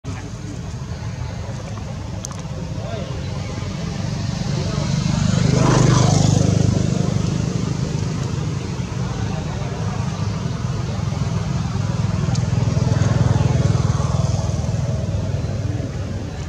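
Motor vehicle engine noise passing by, a steady low hum that swells to a peak about six seconds in and again around thirteen seconds.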